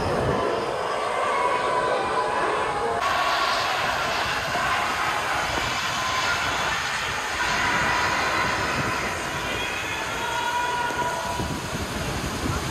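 Steady outdoor din of a large crowd with a continuous low rumble, changing in character about three seconds in.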